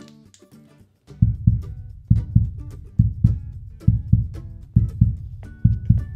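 Heartbeat sound heard through a toy doctor's stethoscope: steady lub-dub double thumps, a little under one pair a second, starting about a second in. Light guitar background music plays under it.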